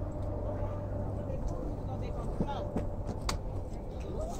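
Steady low hum of an idling vehicle engine, with faint voices in the middle and a sharp click a little past three seconds in.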